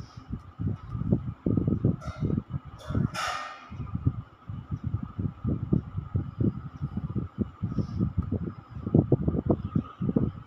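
Irregular soft thumps and rubbing, several a second, from a signer's hands and arms knocking and brushing against each other and his shirt, over a steady faint hum. About three seconds in, a brief louder hiss cuts across.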